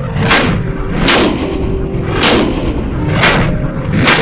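Four gunshots about a second apart, each sharp crack trailed by echo off the walls of an indoor shooting range.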